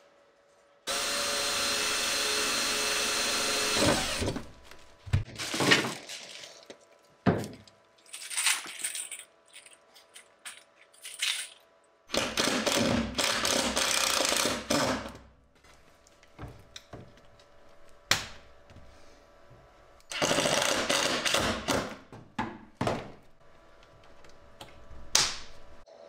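Cordless drill running in three bursts of about two to three seconds each, with clicks and knocks of handling between them, while press-stud fittings are fixed to the aluminium boat seat.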